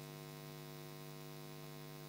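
Steady low electrical hum with a stack of higher overtones, unchanging throughout.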